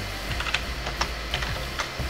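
Computer keyboard typing: a few separate keystrokes spread over two seconds as a line of code is typed.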